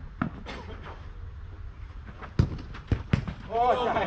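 Sharp thuds of a soccer ball being kicked: a light one just after the start, the loudest about two and a half seconds in, then two more in quick succession half a second later. A man's shout starts near the end.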